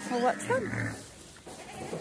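A short call from a farm animal in a barn, wavering up and down in pitch within the first second, followed by quieter barn noise.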